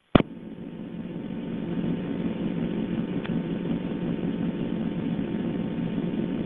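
A click, then a steady low hum with hiss heard over a telephone line. It swells over the first two seconds and then holds, with a faint tick midway.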